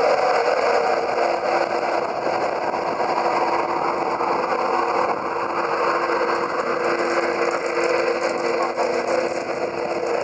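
Class 91 electric locomotive 91131 and its Mark 4 coaches rolling past along a platform: a steady hum from the locomotive's electrical equipment over continuous wheel-on-rail noise.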